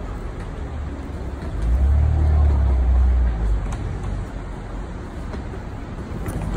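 City street traffic noise, with a motor vehicle passing close by: its low rumble swells loud about two seconds in and fades away by about three and a half seconds.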